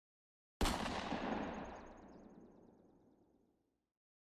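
A single sudden boom sound effect hits about half a second in, then dies away gradually over about three seconds.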